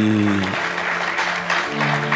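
A large audience clapping, starting about half a second in as a held sung note ends, over steady background music.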